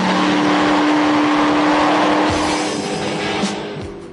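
Weineck Cobra replica's V8 engine running loud at high, steady revs as the car comes toward the camera, fading away in the last second.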